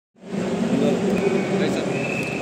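Several people talking at once over a steady hum of traffic. A thin, steady high-pitched tone comes in a little past halfway.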